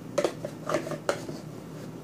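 A plastic measuring spoon scooping cornstarch out of a plastic cornstarch container: a few short scrapes and knocks of spoon against container in the first second or so.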